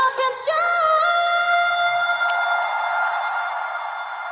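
Female pop vocalist in a live concert recording, singing a few quick rising notes and then holding one long high note that slowly fades near the end.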